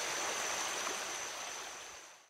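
Forest ambience: an even rushing hiss like running water, with a steady high-pitched whine held on one note, fading out over the last second.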